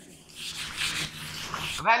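A duster rubbing across a whiteboard in repeated wiping strokes, erasing marker writing: a dry, scratchy rubbing.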